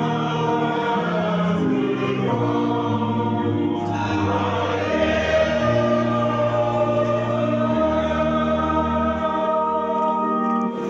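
A church choir singing a hymn in several parts, holding long chords that change every second or two.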